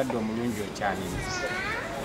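Speech only: a man talking, with nothing else standing out.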